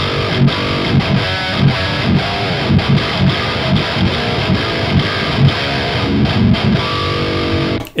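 Chapman ML-1 Pro Modern 28-inch-scale baritone electric guitar in drop F sharp, played through a PRS amp boosted by overdrive for a high-gain distorted tone. It plays a heavy riff of fast, rhythmic low chugs with higher notes over them, and stops abruptly near the end.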